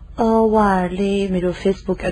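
A person's voice drawing out one long vowel for more than a second, its pitch sinking slightly, then breaking into a few short syllables near the end.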